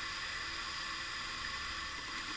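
Steady background hiss with a faint constant whine, and no other sound.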